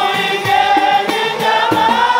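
A group of men singing a maulid chant together into microphones, one held melodic line over a steady low beat of several strikes a second.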